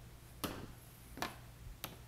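Three light clicks, about three-quarters of a second apart, from hands sliding the rubber trim piece along the Jeep Grand Cherokee's roof rack rail to uncover the mounting screws.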